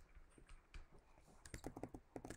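Faint clicks and taps of a stylus writing on a tablet, with a quick run of them about one and a half seconds in; otherwise near silence.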